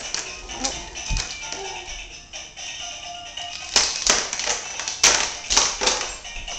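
Tinny electronic music playing from a toddler's ride-on toy lion, with several sharp plastic clicks and knocks in the second half as the toy is handled and pushed.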